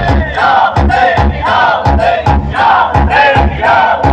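Loud DJ music from a stacked loudspeaker rig with a crowd shouting over it. The heavy bass beat drops out, leaving a repeating wavering vocal-like line over sharp regular strokes, and the beat comes back right at the end.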